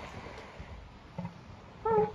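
Elephant seal pup calling: a faint low call about a second in, then a louder, short high-pitched yelp near the end, over a steady low background rush.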